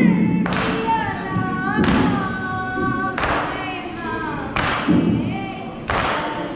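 A group of men chanting a nauha, a mourning lament, in unison while beating their chests in time: a sharp slap about every one and a half seconds, with the voices holding long notes between the strikes.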